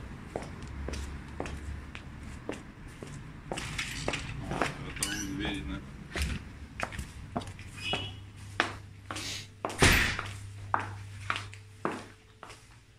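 Footsteps walking at a steady pace, about two steps a second, first on paving and then on a tiled floor, with one louder thump about ten seconds in.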